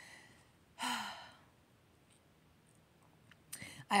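A woman sighs once about a second in: a short, breathy exhale whose voiced start drops in pitch.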